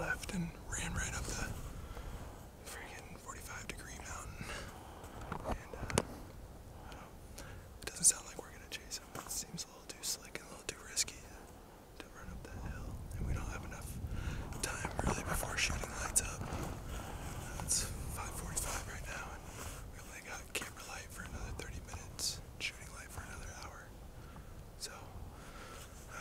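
A man whispering close to the microphone, with a few scattered sharp clicks.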